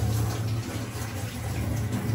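Open steel pot of rice boiling hard on a gas burner: a steady hissing, bubbling noise with a low steady hum underneath.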